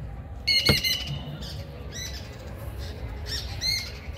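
A bird squawking in short calls: a quick run of three about half a second in, one near two seconds, and two more near the end, over a steady low rumble.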